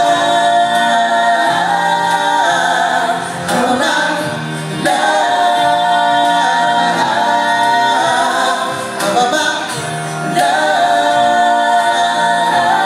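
Live vocal music: singers holding long notes together over a live band's accompaniment.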